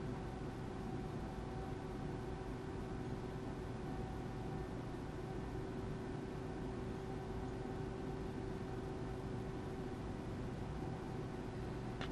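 Steady faint electrical hum and hiss with a thin, even tone: background noise of the amplifier test bench, unchanged while the dyno run is measured.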